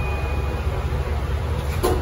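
Mitsubishi machine-room-less traction lift car running with a steady low hum, a brief faint high beep at the start and one sharp click near the end as the car arrives at the floor.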